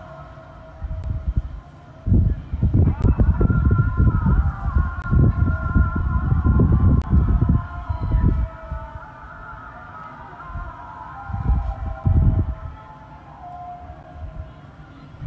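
Low rumbling gusts of wind buffeting the microphone, loudest over several seconds in the first half and again briefly near the end, over faint sustained wavering tones.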